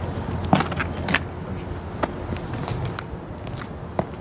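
Boot steps on stone paving: a handful of sharp heel strikes and scuffs at irregular intervals, the loudest about half a second and a second in, over a steady low background hum.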